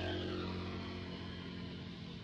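A steady low engine hum, like a motor vehicle running nearby, easing slightly in level.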